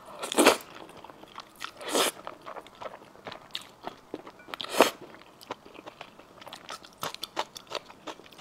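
Close-miked slurping of saucy noodles: three loud slurps, about half a second, two seconds and nearly five seconds in, with wet chewing and many small mouth clicks between and after.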